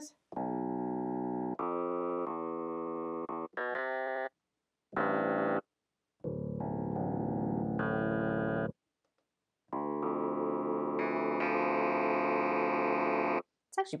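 A short looped slice of a clavinet-like sample, played through Ableton Live's Simpler sampler in Classic mode as a series of held notes and chords at different pitches. Each note sustains steadily on its loop and cuts off abruptly when released.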